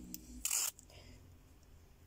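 A short, crisp rustle of paper about half a second in, from a strip of vellum border sticker being handled. A faint steady room hum lies under it.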